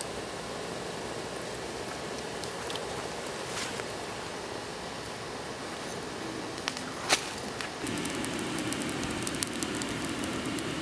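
Lump charcoal burning in a dirt forge under forced air from a hair dryer: a steady rush of air and fire with an occasional sharp pop, turning to frequent small crackles after about eight seconds.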